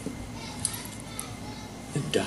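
A pause in the speech: a faint, steady hiss with faint voices in the background.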